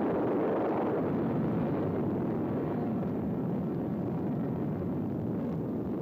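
Atomic bomb blast rumble: a loud, steady roar that starts abruptly just before and slowly fades away.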